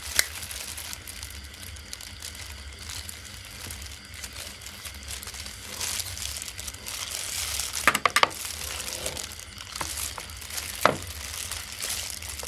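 Light kitchen handling sounds as an ingredient is spooned into a bowl: faint rustling over a steady low hum, with a few sharp clicks of the utensil about eight and eleven seconds in.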